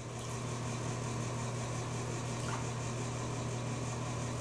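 Steady low hum with an even hiss under it: the background noise of the room in a pause between sentences.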